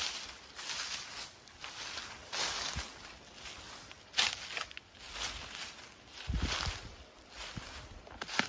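Footsteps crunching on a thick layer of dry bamboo leaves, a step every second or less at a walking pace.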